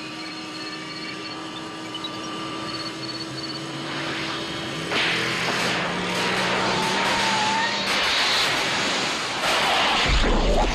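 Film soundtrack of the DeLorean time machine speeding toward the camera. A steady hum is followed, about halfway through, by a loud electrical rushing and crackling over a rising engine note as the car nears 88 mph. It grows louder near the end.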